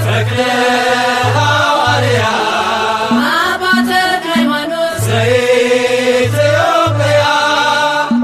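Ethiopian Orthodox mezmur (hymn) sung in Amharic by a solo voice over instrumental accompaniment with a repeating bass line.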